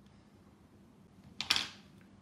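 Small scissors snipping: a faint click, then a single sharp snip about one and a half seconds in, cutting soft sugar modelling paste.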